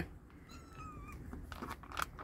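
Kittens meowing: a short, loud meow right at the start, then a thin, high mew about half a second in, with a few light clicks near the end.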